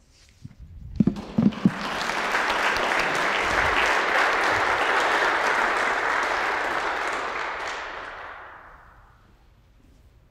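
Audience applauding in a large church: the applause swells quickly, holds steady for several seconds, then dies away near the end. Just before it, about a second in, come a few sharp knocks as the handheld microphone is put down.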